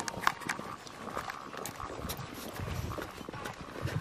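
Footsteps in snow, an uneven run of soft steps with small clicks and knocks, and low thumps on the microphone in the second half.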